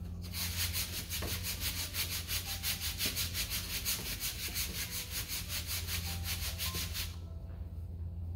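Rapid, evenly spaced rubbing strokes, about six a second, starting just after the beginning and stopping about a second before the end, over a steady low hum.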